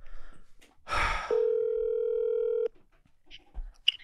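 Telephone ringback tone from an outgoing call on speakerphone: one steady ring of about a second and a half that starts about a second in and cuts off cleanly, just after a short burst of noise.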